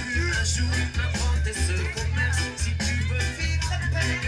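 Reggae music played loud through a sound system, led by a heavy bass line in short repeated notes.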